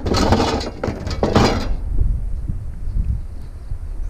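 Scrap being loaded into a utility trailer: two short scraping, clattering noises in the first two seconds, then only a low steady rumble.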